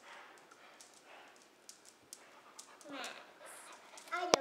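Faint sounds of a yellow Labrador retriever close by on a tile floor: scattered light clicks and soft panting, with a short whine about three seconds in.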